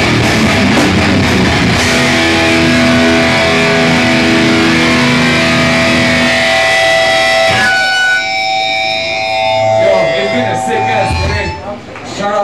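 Live heavy rock band with distorted guitars, bass and drums playing loudly, the full band cutting off about seven and a half seconds in. Guitar notes are left ringing afterwards, and a voice begins near the end.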